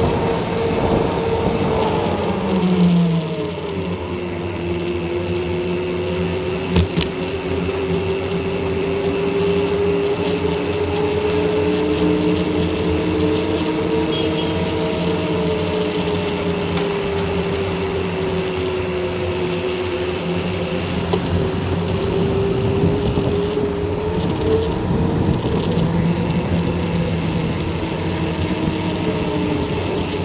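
Mountain bike rolling on asphalt: a steady hum from the knobby tyres and rushing wind on the camera. The hum's pitch drops a few seconds in as the bike slows, then drifts with speed. One short click about 7 seconds in.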